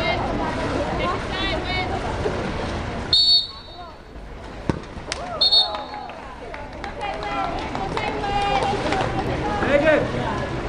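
Spectators and players chattering and calling out around a water polo pool, with two short referee whistle blasts, the first about three seconds in and the second about two seconds later.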